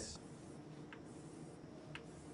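Chalk drawing lines on a chalkboard: faint scratching, with two light taps, one about a second in and one near the end.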